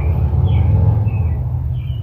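Steady low rumble with a few faint, short bird chirps over it.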